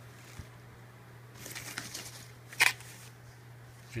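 Handling noise of a handheld camera moving over a guitar body: a faint click, a soft rustle, then a short sharp tap about two and a half seconds in, over a steady low hum.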